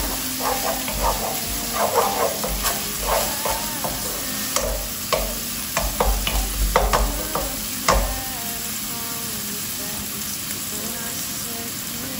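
Chopped onion sizzling in olive oil in a non-stick frying pan while a wooden spoon stirs it, scraping and knocking against the pan for about the first eight seconds; after that only the steady sizzle of the onion browning.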